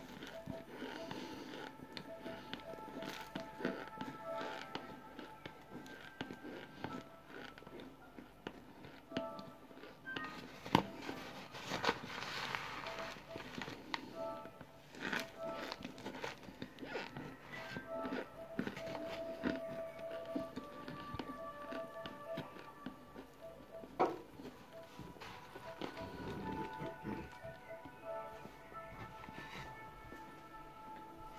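Crunching and chewing of dry compressed cornstarch chunks, a string of short clicks with a few sharper cracks, over background music and voices.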